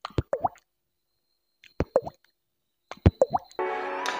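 Beatboxed water-drop plops made with the mouth into a microphone: three quick runs of wet plops, each rising in pitch. Music starts near the end.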